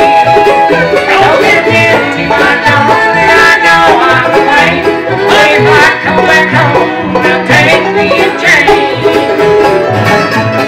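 Live bluegrass band playing: banjo, fiddle, mandolin, acoustic guitar and upright bass together, the bass keeping a steady low pulse under the picked notes.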